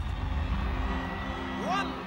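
Electronic sound effects of a TV programme's closing graphics: a low steady hum, then, near the end, swooping tones that rise and fall in quick arcs as electronic outro music begins.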